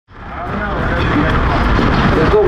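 People talking under a steady low rumble, fading in over the first half second.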